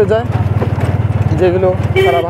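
Engine of the vehicle carrying the camera, running at road speed: a steady low rumble made of fast, even pulses.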